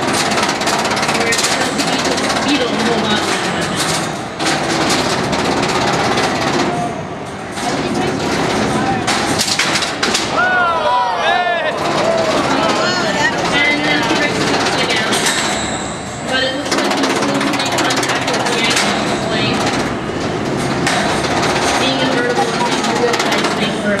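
Robot-combat arena din: continuous crowd voices and shouting under many sharp, rapid clacks and knocks from the beetleweight fighting robots. A few short whistling tones that swoop up and down come through around the middle.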